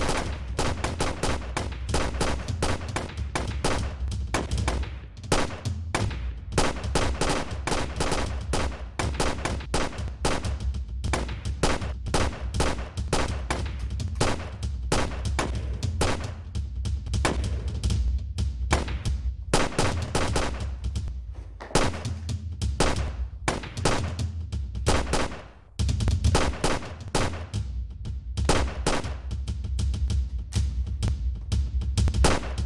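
Sustained pistol gunfire in a shootout: rapid shots, several a second, with hardly a pause, and a short break about twenty-five seconds in.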